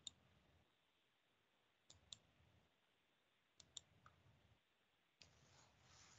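Near silence broken by a few faint, short clicks, several coming in quick pairs, spread across the pause.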